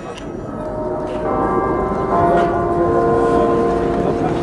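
Church bells ringing, several bells at different pitches coming in one after another from about a second in and ringing on, over crowd noise.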